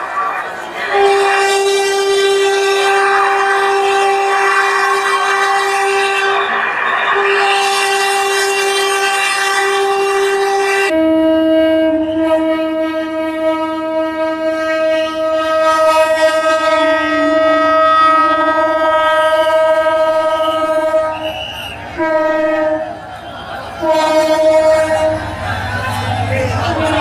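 Train horn blowing in long, steady blasts. About eleven seconds in, the sound cuts to a different, lower horn note, which carries on with a few short breaks near the end.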